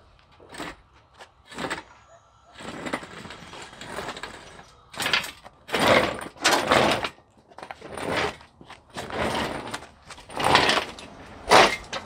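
An engine hoist lifting a Jeep 4.0 engine out of its bay and being hauled back: a series of short scrapes and clunks from the hoist and the hanging engine, louder and closer together in the second half.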